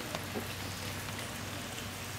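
Steady patter of falling water, with a faint low hum underneath.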